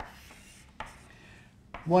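Chalk drawing lines on a blackboard: scratchy strokes, one at the start and another just under a second in.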